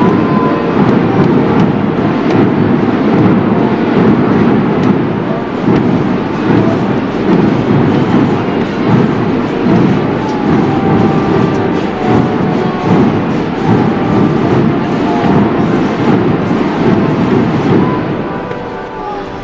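Massed processional drums and bass drums playing a dense, continuous roll.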